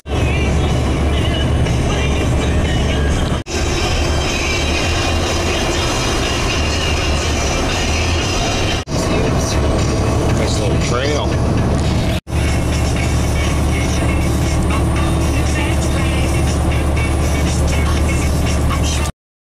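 Steady low rumble of engine and road noise inside a tractor-trailer's cab at highway speed, with a radio's speech and music faintly underneath. The sound breaks off briefly three times.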